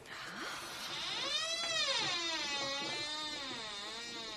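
A door creaking slowly open: one long creak whose pitch sweeps down and back up several times.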